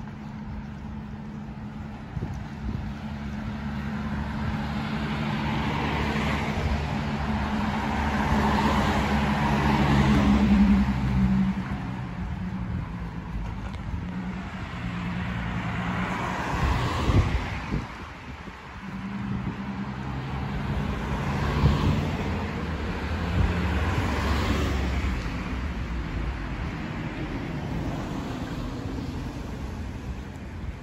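Cars passing one after another on a city street, each rising and fading as it goes by. The loudest pass comes about ten seconds in, with others near 17, 22 and 24 seconds, over a steady low engine hum.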